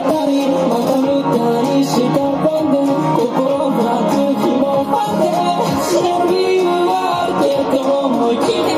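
Amplified electric guitar played live through a small amp, with a voice singing along over it.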